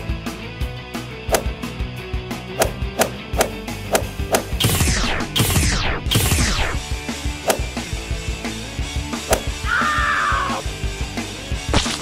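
Background music with a steady beat, overlaid with cartoon fight sound effects: a punch hit at the start, then three quick swooshes falling steeply in pitch in the middle, and another sharp hit near the end.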